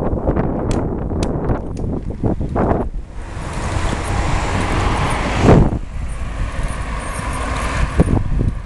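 Wind buffeting the microphone of a camera on a moving bicycle, over a constant low rumble, with scattered sharp ticks and rattles during the first three seconds. About three seconds in, a broader rush of road traffic joins it, with a loud swell about halfway.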